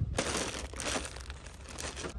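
Clear plastic bags of bundled toys crinkling as a hand handles and pushes them along a store shelf: an irregular rustling crackle, loudest at the start and softer after.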